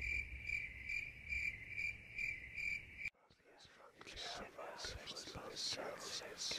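A cricket chirping at night: a steady high trill pulsing about twice a second, which cuts off suddenly about three seconds in. Faint whispering follows near the end.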